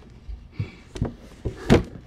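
A few soft knocks and thumps of handling as a plastic toy doll is moved about, the loudest near the end.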